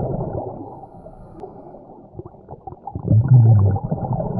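A scuba diver's underwater breathing: regulator bubbles gurgling and crackling, muffled and dull as heard through an underwater camera. About three seconds in comes a short, loud, muffled humming exclamation from the diver through the regulator.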